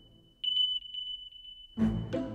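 Edited-in electronic sound effect: a high steady beep-like tone that stutters a few times about half a second in and is then held. Near the end a low hit brings in background music.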